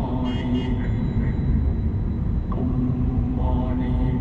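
Low, steady rumble of a car driving, with a voice in long, steady-pitched held notes over it.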